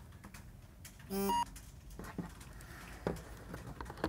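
A short electronic beep, about a third of a second long, a little over a second in, as the smartphone app reads the QR code on the back of the intercom monitor. Light knocks and handling of the plastic monitor before and after it.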